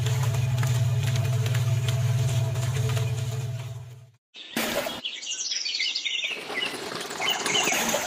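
A small electric motor turning a toy concrete mixer's drum hums steadily, then cuts off abruptly about four seconds in. After a short gap, birds chirp over a faint background noise.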